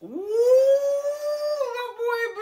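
A man's drawn-out vocal exclamation that swoops up in pitch, holds one note for about a second and a half, then breaks into choppier voice near the end.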